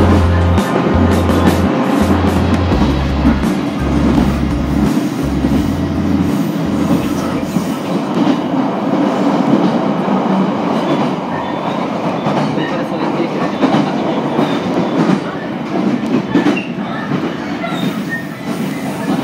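Steady running noise of a passenger train, heard from inside the carriage: a continuous rumble of wheels on track. Background music with a deep bass line plays under it for the first seven seconds or so, then drops away.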